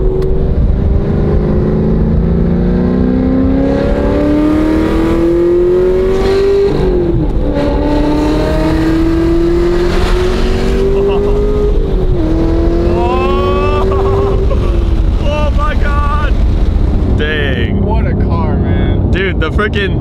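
Supercharged 6.2-litre V8 of a 1,000 hp Hennessey Exorcist Camaro ZL1 1LE, with headers and straight-pipe exhaust, at full throttle from inside the cabin. The engine note climbs, drops at an upshift about seven seconds in, climbs again, drops at a second upshift about twelve seconds in, then climbs briefly and falls away as the throttle is released about fifteen seconds in.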